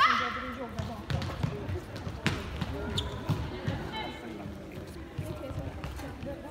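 An indoor football being kicked and bouncing on a hard sports-hall floor, each hit a sharp knock that echoes in the hall. Players' voices call out, with a loud call right at the start.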